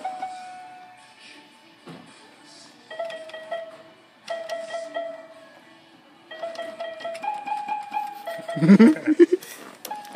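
Toy electronic keyboard played a few keys at a time: short single notes, often the same note struck twice in a row, in brief phrases with pauses between. A loud burst of laughter breaks in near the end.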